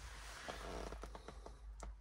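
Faint rustling handling noise from the hand-held camera as it pans across the cab, with a few soft clicks and one slightly louder click near the end.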